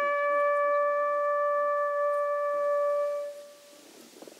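A lone bugle call ending on one long, steady held note, which dies away about three and a half seconds in.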